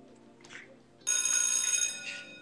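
Faint music, then about a second in a loud, bright ringing tone with many high overtones that starts suddenly, holds steady for just under a second and stops.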